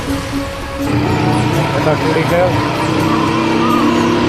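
Motorcycle riding and accelerating through city traffic, picking up speed from about a second in, with music carrying a voice heard over it.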